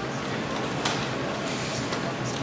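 Hall room noise between applause and the first note: a low, steady murmur and rustle from the audience and players, with one sharp click a little under a second in.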